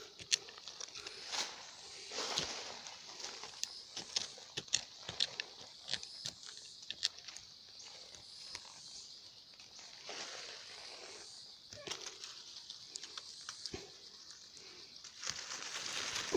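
Dry leaves, twigs and soil being cleared by hand around a wild yam vine, heard as scattered rustles, scrapes and small snaps.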